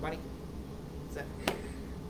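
Room tone with a steady low hum and one sharp click about one and a half seconds in.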